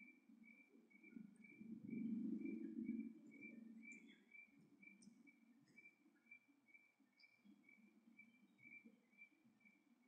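Near silence: faint room tone, with a faint high tone pulsing two or three times a second and a brief low murmur about two seconds in.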